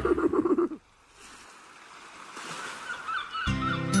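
The theme tune ends within the first second. After a moment of near silence, a wash of surf and repeated seagull cries fade in and grow louder. Music starts again about three and a half seconds in.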